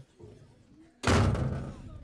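A door slamming shut about a second in: one sudden loud bang with a rattle that dies away over most of a second.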